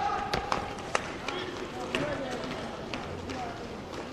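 Inline roller hockey in play: several sharp clacks of sticks and puck, with indistinct shouting from players.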